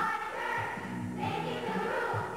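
A girls' choir singing together, holding long notes.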